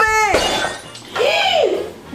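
A glass vase smashing and shattering, with a shouted voice just before it and a rising-and-falling cry after it.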